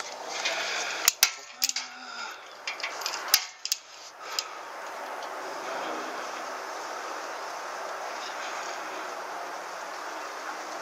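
Several sharp, irregular metallic clicks and knocks over the first four seconds or so, then a steady rustling hiss.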